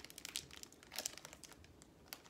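A crinkly candy wrapper crackling as it is handled and opened by hand, in quick irregular crackles with a sharper one about halfway through.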